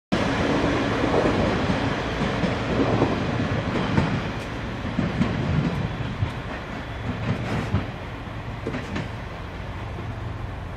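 KiHa 40 diesel railcar pulling away, its diesel engine running under power while its wheels knock and clatter over rail joints and points. The sound fades gradually as it moves off.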